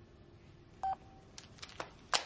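Mobile phone being hung up: a single short electronic key beep about a second in as the call is ended, followed by three quick clicks of its keys or casing.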